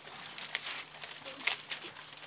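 Scissors snipping paper amid light paper rustling, with a few short sharp snips.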